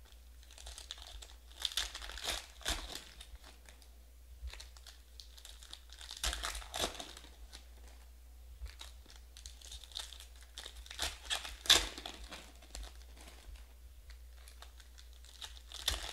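Foil wrappers of 2020 Panini Prizm Draft football card packs crinkling and tearing as the packs are handled and opened, in irregular bursts of rustling with a sharp crackle near the twelfth second, the loudest moment.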